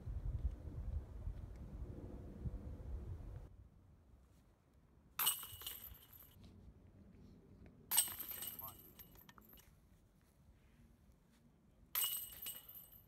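Disc golf putts striking the hanging metal chains of a basket twice, about five seconds in and again nearly three seconds later, each a sudden jingle that rings on for about a second. Wind rumbles on the microphone for the first few seconds.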